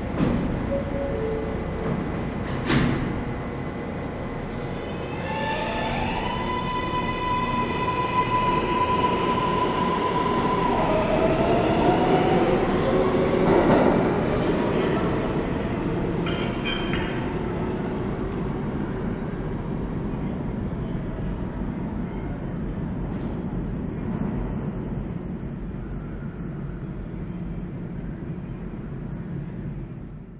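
Subway train running over steady rumbling track noise, with a sharp clank about three seconds in. Its electric motors whine up in pitch about five seconds in, hold one steady tone for several seconds, then fall away.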